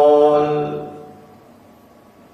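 A man's voice chanting a Quran verse in the Jiharkah melodic mode (taranum), holding one long steady note that fades away about a second in.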